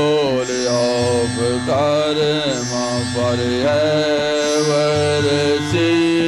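Devotional song: a man sings a slow melody with long sliding notes over a steady, sustained drone accompaniment.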